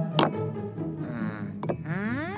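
Cartoon sound effect of drinking glasses clinking as they are set down on a table, a sharp ringing clink just after the start and another near the end, over background music.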